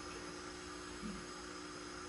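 Steady low electrical mains hum with faint hiss, with no drum strokes.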